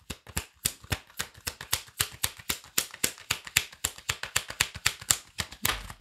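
A tarot deck being shuffled by hand: a quick, irregular run of crisp card clicks, about six or seven a second.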